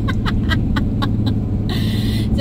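Steady engine and road drone inside a moving Ram ProMaster van's cab. Over it, through the first second and a half, comes a quick run of short sharp ticks, about four a second.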